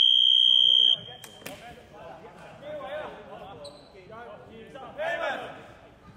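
Basketball game buzzer sounding one long, loud, steady electronic tone that cuts off about a second in. Then indistinct voices echo around the sports hall, with a louder call near the end.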